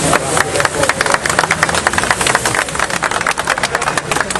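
A fast, dense run of sharp clicks, about ten a second, over crowd noise.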